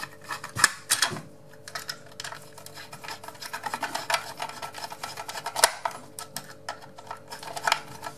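A small screwdriver driving the faceplate screws of a plastic double wall socket, its tip slipping and clicking in the screw slots, with irregular small clicks and scrapes and a few sharper clicks along the way.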